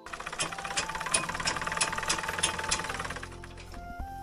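Treadle sewing machine running and stitching: a fast, even rattle with a sharper click about three times a second. It starts suddenly and dies away just before the end.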